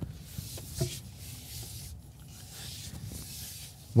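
Ford F-150 Lightning electric pickup crawling over a rocky dirt trail in off-road mode, heard inside the cab: a steady low rumble of tyres on dirt and stones with faint irregular creaks and rubbing from the body and interior.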